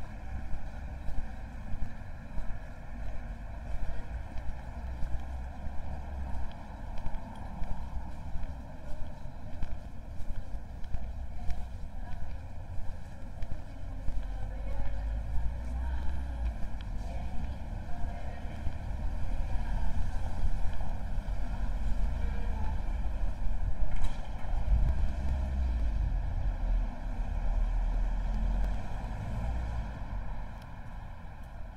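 Town-centre street ambience heard on the move: footsteps on paving about twice a second, distant traffic and passers-by's voices. Wind rumbles on the microphone through the second half.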